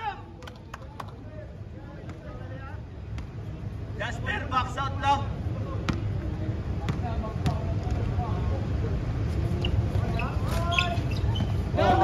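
A basketball bouncing on a hard outdoor court, a scattering of separate knocks, with distant players' voices calling out over a steady low rumble.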